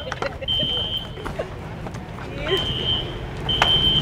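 An electronic beeper sounding three high-pitched, steady half-second beeps, the last two about a second apart, over low traffic rumble.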